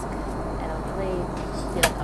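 Steady airliner cabin noise in flight, with a single sharp click near the end.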